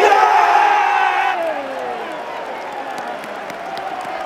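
Football stadium crowd celebrating a goal: a sudden mass shout of many voices, loudest for the first second and a half and sliding down in pitch, then easing into steady cheering.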